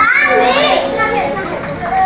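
A young child's high-pitched voice, rising sharply in pitch at the start, among the chatter of other people around.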